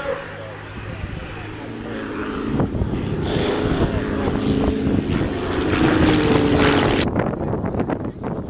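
Van's RV-7 light aircraft in aerobatic flight, the piston engines and propellers droning steadily, growing louder over the first six seconds with small shifts in pitch. About seven seconds in the sound changes abruptly to a quieter, gustier one.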